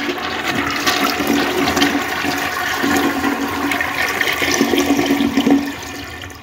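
A steady rush of water with a low hum that comes and goes, dropping away near the end.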